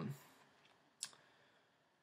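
Near silence broken by a single short, sharp click about a second in.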